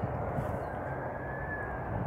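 Steady low outdoor rumble, with a faint high tone that rises and falls in the second half.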